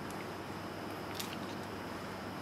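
Quiet room tone with a couple of faint clicks a little past a second in: the eggshell halves touching as an egg yolk is passed from one half to the other to separate it from the white.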